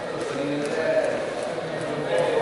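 Indistinct voices in a large gym hall, with short drawn-out vocal sounds over a steady background hum of the room.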